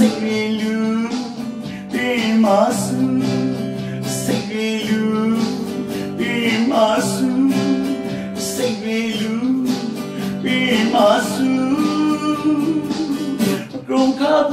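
A man singing a Burmese song in a held, wavering voice, accompanying himself on an acoustic guitar.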